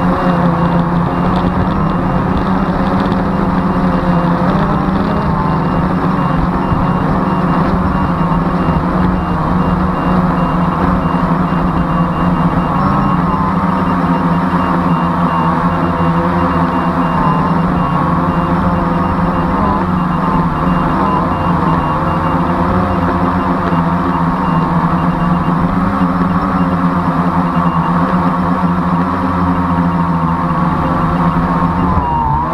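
Drone's motors and propellers buzzing loudly and steadily, heard close up through the onboard camera's microphone, the pitch wavering a little as the drone manoeuvres.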